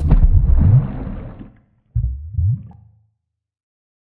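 Low stomach-gurgle sounds closing an electronic track made to imitate belly music. A long gurgle whose low pitch slides up and down fades out after about a second and a half, then two shorter gurgles come about two seconds in.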